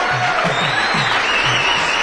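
Applause and cheering from a group of people, with music playing underneath.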